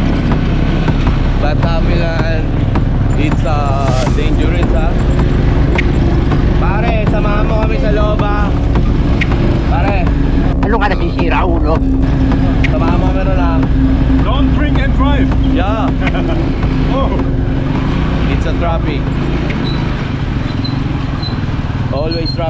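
A motorcycle tricycle's small engine running steadily while riding, with people's voices talking over it.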